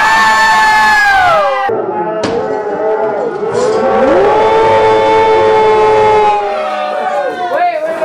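Several people singing together in long, drawn-out notes. The first note slides down and breaks off after about a second and a half, then a second long held chord follows and fades out a little past the middle.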